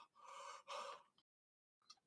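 Faint breathy gasps through an open mouth, a few in the first second and one more near the end, from a person whose mouth is burning from a superhot chili lollipop; otherwise near silence.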